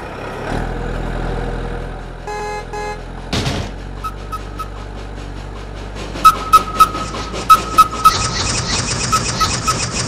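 Animated vehicle sound effects: a steady engine hum with a short run of horn toots about two seconds in, then a brief whoosh. In the second half come a toy train's sharp clicking and a repeating high beep.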